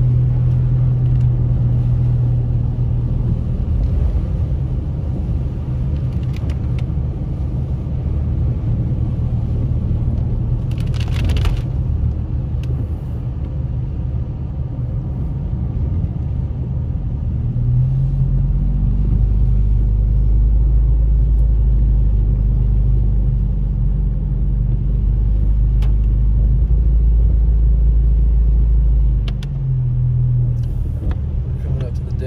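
Steady low drone of a car's engine and tyres heard from inside the cabin on a wet road. About two-thirds of the way through the drone drops deeper and grows a little louder, and there is a short hiss about eleven seconds in.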